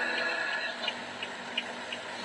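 Steady rushing hiss with a low hum inside a car cabin, with faint light ticks about three times a second.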